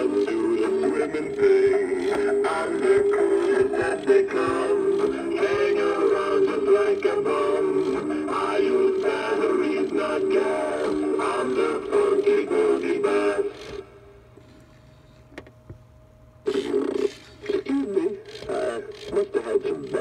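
Sensational Boogie Bass animatronic singing fish playing its song from its built-in speaker: a male voice singing over a backing track. The song stops about fourteen seconds in, and after a pause of about three seconds more sound starts again near the end.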